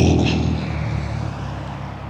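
Road traffic: a passing vehicle's low rumble and tyre noise, fading away.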